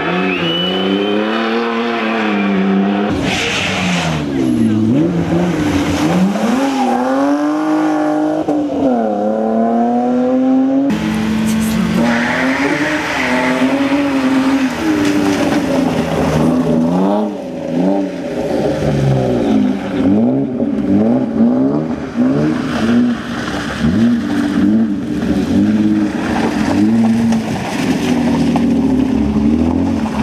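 BMW E36 3 Series rally car's engine revving hard, its pitch climbing and dropping again and again with gear changes and lifts as the car is driven through corners. The sound jumps abruptly twice where the footage cuts.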